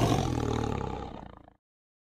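A tiger's roar used as a logo sound effect: one roar that dies away over about a second and a half.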